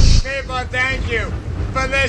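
A hip hop track's beat cuts off abruptly at the start, then a single voice begins the repeated outro phrase 'God bless all of you', with strongly pitched, drawn-out syllables and a short pause between two phrases.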